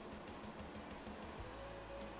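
Faint room tone: steady hiss with a low hum, and a faint thin steady tone joining about one and a half seconds in.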